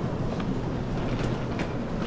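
Steady low rumble of an airport terminal concourse heard while walking, with a few faint ticks on top.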